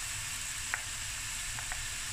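Prawns sizzling steadily in butter in a hot stainless steel frying pan as they are flash fried. Two light clicks of a wooden spoon scraping more prawns in from a bowl.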